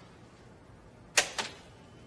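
Two sharp clacks from the front door about a second in, a fifth of a second apart, in an otherwise quiet room.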